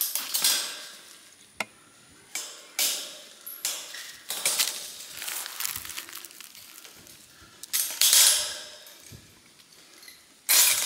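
Metal clinks, rattles and scrapes as pliers work the wires of a welded-wire fence panel lying on dry leaves. The sounds come in short irregular bursts, with one sharp click about one and a half seconds in and the loudest rattles near the end.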